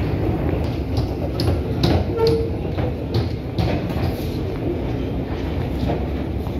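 Metro escalator running: a steady, loud mechanical rumble with irregular clicks and clatter.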